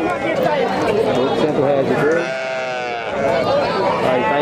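One long bleat from a goat or sheep about two seconds in, lasting under a second, over people talking nearby.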